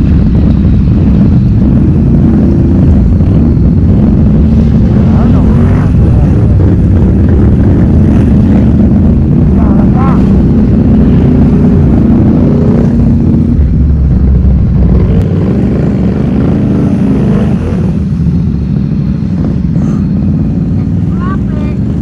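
ATV engines running and revving in thick mud, a loud low engine sound that rises and falls in pitch as the riders work the throttle. The deepest, closest engine sound drops away about fifteen seconds in.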